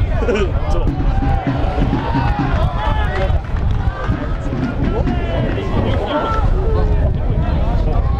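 Pitch-side football match sound: players and spectators shouting and talking, indistinct and overlapping, over a steady low rumble.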